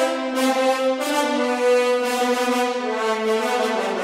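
Sampled French horn section (Metropolis Ark 1's nine-horn patch) playing the main melody in bold held notes, the pitch changing about a second in and again near the three-second mark.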